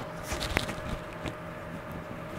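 Handling noise from a clip-on lavalier microphone being fixed to a shirt collar, picked up close by a collar-worn mic: faint rubbing and small clicks, with one sharper click about half a second in.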